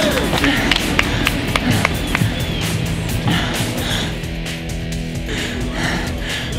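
Background music with a steady beat, settling into held chords over the second half.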